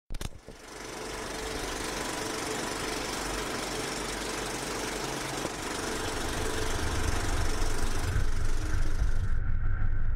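Steady road noise of a car driving on a highway: a hiss with a low rumble that grows louder in the second half. Near the end the hiss cuts off abruptly, leaving only the rumble.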